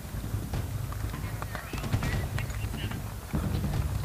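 Hoofbeats of an event horse galloping on grass turf, over a low steady rumble.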